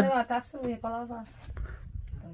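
A person's voice talking briefly in the first second, then only faint low rumble.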